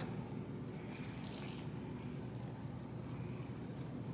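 A person chewing a bite of a tortilla wrap, soft and faint, over a low steady room hum.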